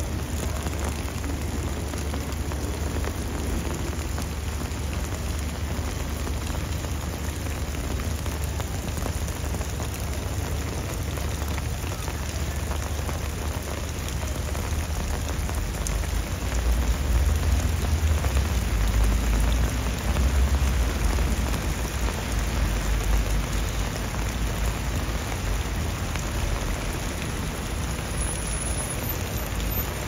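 Heavy rain pouring steadily onto stone paving, an even hiss of falling water with a low rumble underneath that swells louder for a few seconds past the middle.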